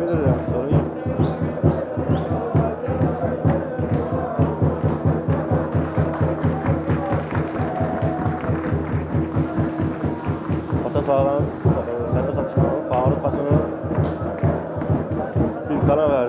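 Crowd of supporters in the stands chanting to a fast, even drumbeat.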